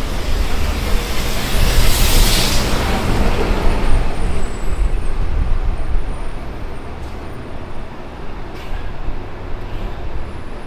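Road traffic on a city avenue, with engines and tyres rumbling as vehicles pass close. A loud hiss rises about two seconds in and fades by four seconds, and the traffic grows quieter from about six seconds.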